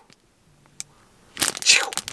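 A clear plastic cupcake wrapper crinkling as it is handled, loud in the second half, after a second of near silence broken by a single click.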